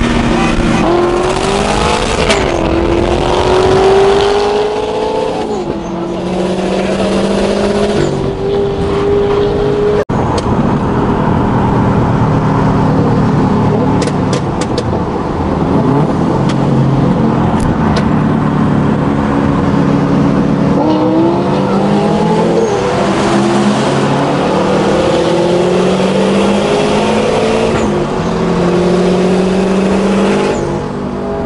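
Cars accelerating hard at full throttle on a highway, the engine pitch climbing and then dropping back at each upshift, several gear changes in a row. The sound cuts abruptly about ten seconds in, and more hard pulls with climbing pitch follow later, over steady road noise.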